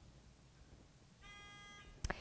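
Faint quiz-show buzzer: one short steady electronic tone lasting about half a second, a little past the middle, signalling a contestant buzzing in to answer. Otherwise near silence.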